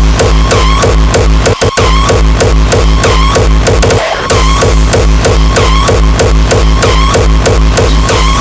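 Uptempo hardcore track with a pounding kick drum on every beat, about three a second, and busy synth layers above it. The kick stops briefly about one and a half seconds in and dips again near the four-second mark.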